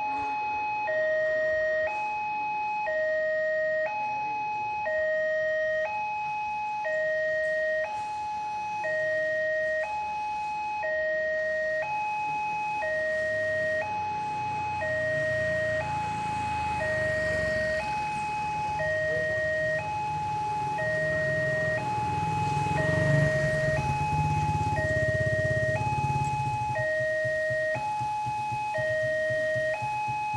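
Electronic warning alarm of a railway level crossing, two tones alternating in a steady cycle while the barrier is down. About halfway through, a train's low rumble builds, is loudest about three-quarters of the way through, then fades under the continuing alarm: the Kertanegara train passing the crossing.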